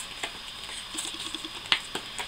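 Paper rustling and crinkling as hands lift a glued sheet off a canvas and press it back down, with small scattered ticks and one sharp click near the end.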